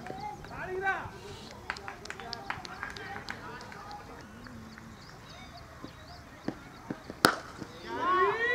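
Cricket players calling to one another, with a few faint knocks, then one sharp crack of a cricket bat striking the ball near the end.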